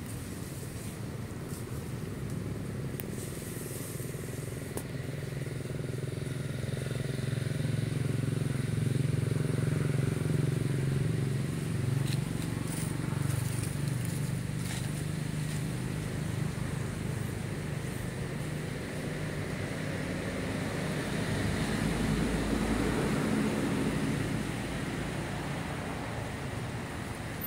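Motor vehicle engines passing on a road, a low drone that swells twice: once about a third of the way in and again near the end.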